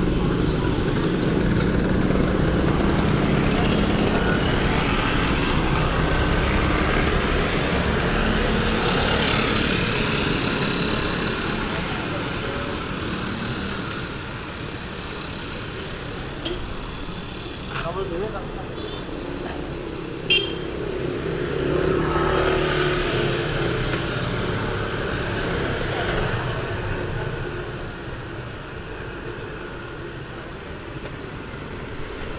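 Busy street traffic, mostly motorcycles running and passing close by, with people's voices in the background. It is loudest in the first half and eases off as the traffic thins, with a few short sharp clicks about two-thirds of the way through.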